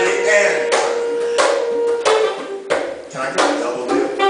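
Live saxophone playing: one long held note for about the first two seconds, then shorter phrases.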